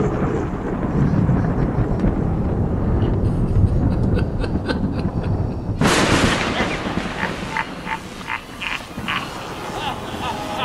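Thunder-like sound effect: a low rumble, then a sudden loud crack about six seconds in that fades into scattered electric crackles.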